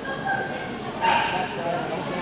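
A dog barks, with the loudest bark about a second in.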